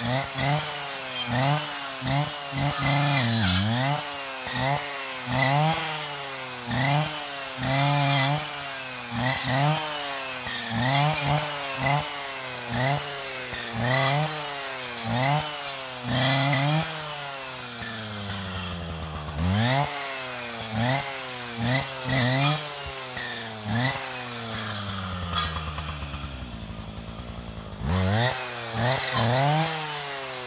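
Husqvarna 545RXT brushcutter's two-stroke engine revving up and dropping back about once a second as its saw blade cuts through brushwood stems. Near the end it falls to idle for a couple of seconds, then revs up again.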